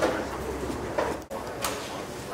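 A dove cooing, with two sharp clicks, one about a second in and another about half a second later.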